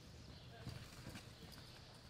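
Faint hoofbeats of a horse loping on soft arena dirt: a few dull, irregular thuds over a low background rumble.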